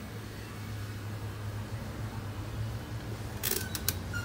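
Steady low electrical hum of workshop equipment, with a quick cluster of sharp clicks and knocks about three and a half seconds in as the phone is moved.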